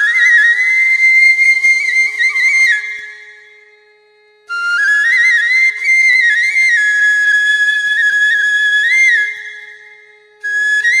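Solo flute music: long held notes with quick ornaments, in two phrases that each fade away, with a short break about three seconds in.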